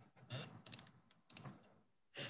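Faint computer keyboard typing: a few scattered key clicks.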